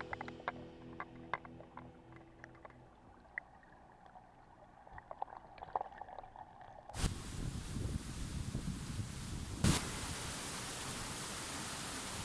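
Muffled underwater sound with scattered small clicks and ticks. About seven seconds in it cuts abruptly to the steady rush of a fast mountain river running over rocks, with one sharp knock a few seconds later.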